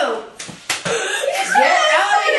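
Two sharp smacks about a third of a second apart, a hand striking a person in horseplay, followed by loud excited boys' voices.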